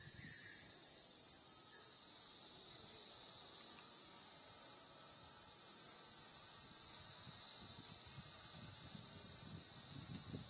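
Steady, high-pitched insect chorus that drones without a break, with faint low rustling near the end.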